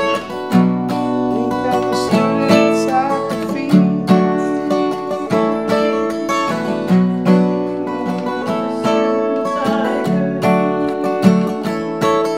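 Acoustic guitar strummed in a steady rhythm, the chords changing every second or so.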